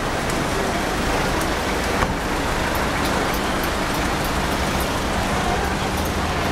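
Steady hiss of road traffic along a busy street, with a low steady engine hum and one short click about two seconds in.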